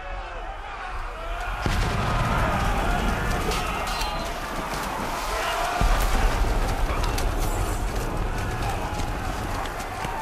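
Battle scene soundtrack: many men yelling and screaming over the clashes and thuds of close hand-to-hand fighting, with a heavy low rumble that comes in about two seconds in.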